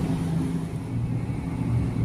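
Steady low mechanical hum of refrigerated freezer display cases, with no change through the pause.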